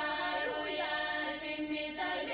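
Women's folk choir singing an Albanian polyphonic song: the melody voices bend and move over a steady, continuously held drone.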